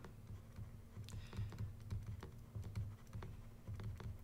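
Faint, irregular taps and scratches of a stylus writing on a tablet screen, over a low steady hum.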